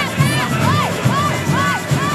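A samba school's drum section playing, with steady low surdo beats, and over it a run of short squeals that rise and fall in pitch, about two a second, amid crowd noise.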